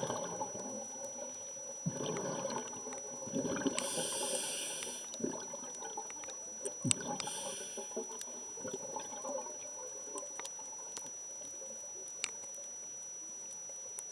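Scuba diver's breathing recorded underwater: bubbling bursts from the exhaled air, and two hissing breaths through the regulator at about four and seven seconds in. A faint steady high whine and light clicks run under it.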